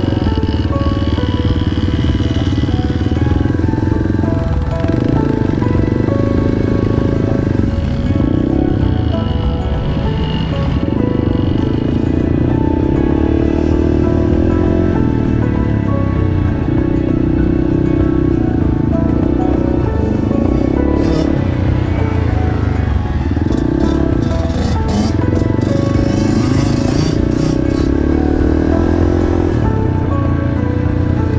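Background music over a dirt bike engine riding along, its note rising and easing off every few seconds as the throttle is worked and gears change.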